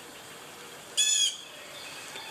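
A bird gives one short, high call about a second in, over faint outdoor background noise.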